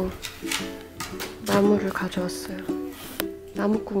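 Background song: a voice singing over a plucked-string accompaniment.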